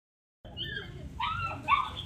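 A puppy whimpering in three short, high-pitched yips that start about half a second in.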